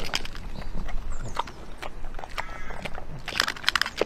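A pig eating from a pan with its snout: wet smacking and chewing clicks in irregular quick clusters, loudest near the end.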